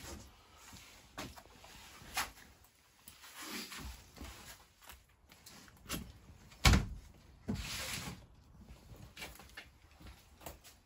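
Large painted board being handled and set down: scattered knocks and clicks, one loud thump about two-thirds of the way in, then a short scraping rustle.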